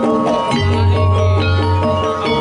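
Jaranan accompaniment music: metal mallet percussion plays a running pattern of ringing notes, and a deep low tone comes in about half a second in and holds.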